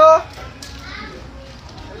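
Plastic chocolate-bar wrapper being torn open and crinkled by hand: a sharp crackle about half a second in, then softer rustling, with faint children's voices behind.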